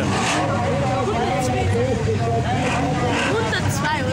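Several stock-car engines (unmodified cars over 1800 cc) running together in a steady low drone on a dirt track.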